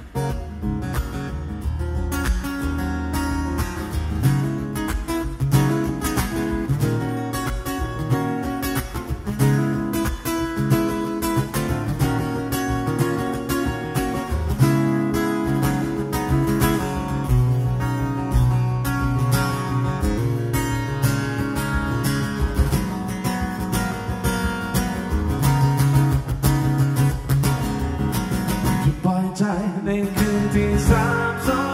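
Martin DCME acoustic guitar strummed in steady chords, playing live with a short dip in level right at the start.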